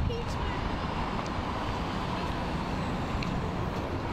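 Outdoor street ambience: a steady rumble of city traffic with indistinct voices in the background.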